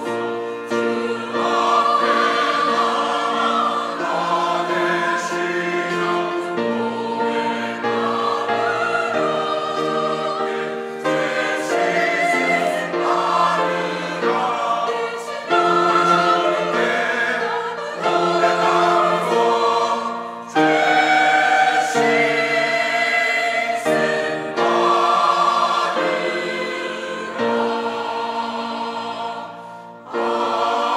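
Mixed church choir singing a Korean hymn anthem in parts, with piano accompaniment. It grows suddenly louder about halfway through and again a few seconds later, then dips as it reaches the closing 'Amen'.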